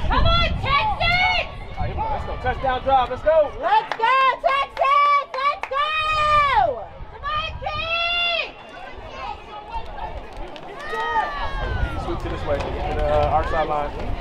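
Several people shouting and yelling, with a few long drawn-out yells in the middle, while wind rumbles on the microphone.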